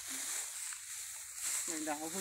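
Quiet, steady high-pitched hiss of outdoor background noise, with a man's voice starting near the end.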